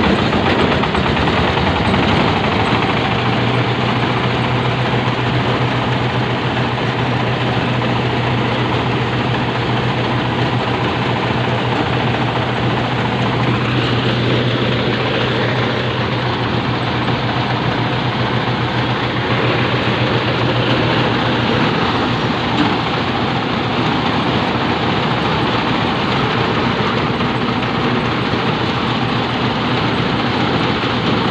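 A small stationary single-cylinder diesel engine runs steadily, driving a paddy threshing drum. The drum makes a continuous dense clatter as rice stalks are fed into it, with a steady low hum underneath for much of the time.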